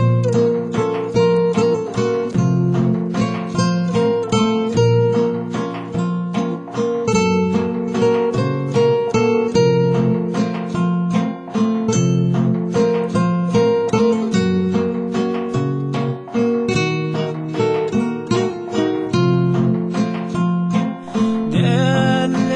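Instrumental break of a song played on acoustic guitars: a quick plucked melody over a steady strummed accompaniment.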